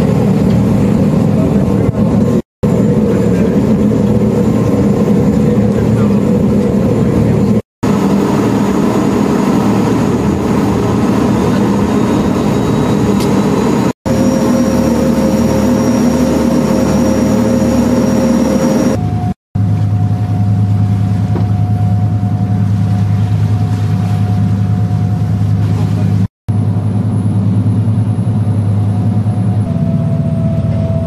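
Steady low drone of a ship's engine, heard on deck while under way. The sound cuts off abruptly a few times at edits. In the second half the drone grows deeper and stronger, with a faint steady whine above it.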